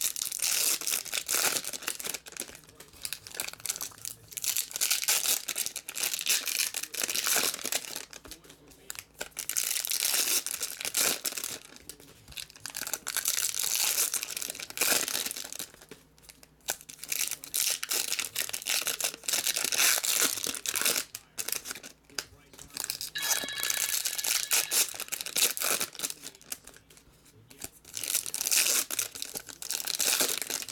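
Foil trading-card packs being torn open and crinkled by hand: repeated bursts of crackling rustle with short pauses between them.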